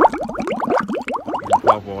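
A cartoon-style bubbling transition sound effect: a quick run of upward-gliding bloops, about five or six a second, with a voice coming in near the end.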